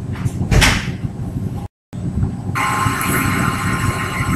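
Rustling and knocking from someone moving right beside the microphone, with one sharp knock about half a second in. Just before halfway the sound cuts out completely for a moment, then comes back as a steady hiss with a thin high whine.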